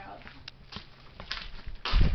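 Handheld camera handling noise: a few light knocks and clicks, then a loud, deep thump near the end.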